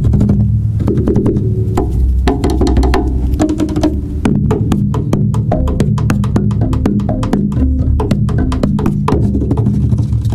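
Contrabass (double bass) played as a hand drum: quick knocks and taps on its wooden body over low ringing notes from the strings. The taps turn dense and rapid from about four seconds in.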